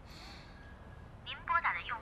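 A brief burst of line hiss, then, from about two-thirds of the way in, a thin, band-limited voice over a mobile phone line: the recorded message of a call that goes unanswered.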